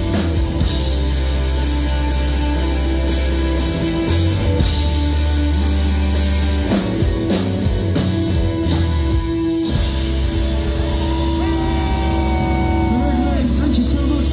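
Live rock band playing loud through a PA: long, deep bass guitar notes that change every few seconds, with electric guitar and drums. A voice comes in near the end.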